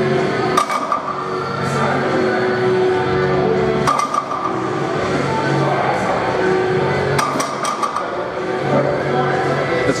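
Background music, with sharp metallic clinks about every three seconds from the plates of a heavily loaded barbell as it rises and settles through hip-thrust reps.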